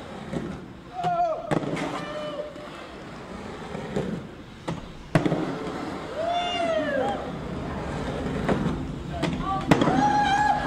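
Inline skate wheels rolling over rough pavement, with several sharp clacks as the skates strike the ground. Short shouted exclamations from people come in over it, one about a second in, one past the middle and one at the end.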